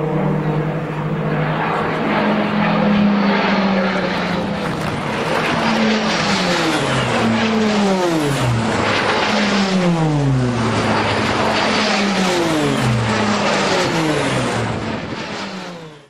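Pilatus PC-9/A single-engine turboprop trainers flying overhead: a steady propeller drone at first, then from about six seconds a rapid series of about eight fly-bys, each falling in pitch as the aircraft passes. The sound fades out at the very end.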